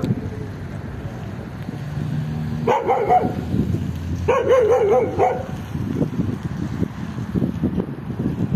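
A dog giving two drawn-out barks with a wavering pitch, about three seconds in and again a second later, the second one longer.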